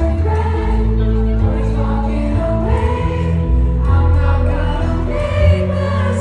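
Live pop song performed in a concert hall: band music with a heavy bass line under singing, recorded loud on a phone in the audience.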